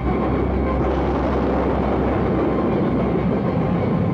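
Jet engines of an SR-71 Blackbird at full afterburner on takeoff: a loud, steady rush of jet noise that swells about a second in.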